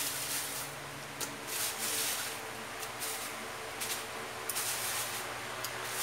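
Chopped raw beef being moved from a plastic bag into an aluminium pressure cooker pot: rustling and rubbing with a handful of soft clicks and knocks scattered through, over a faint steady hum.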